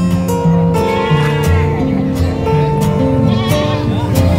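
Background music with steady held notes, over goats bleating twice, about a second in and again near the end, with a shaky, wavering call.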